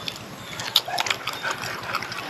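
A person chewing a mouthful of spicy papaya salad and grilled fish, with crisp crunches and mouth clicks; one sharp click a little before the middle stands out.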